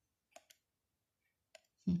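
Three light clicks of a slender metal pointer touching tarot cards, then a short hummed "hmm" near the end.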